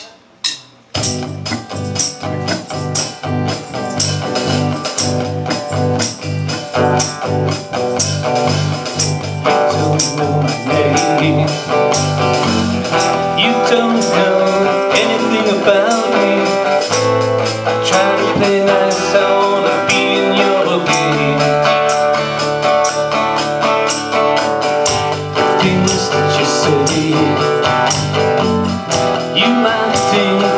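Live band playing the opening of a song on acoustic guitar, bass and electronic drum kit, coming in together after a few sharp clicks about a second in and going on with a steady beat. No words are sung.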